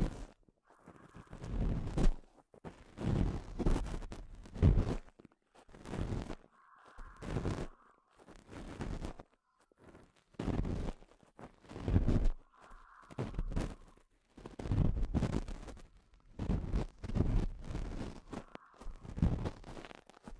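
Ear pick scraping and rubbing inside the ear of a binaural microphone, in irregular strokes about a second apart. This is the cleaning of the right ear.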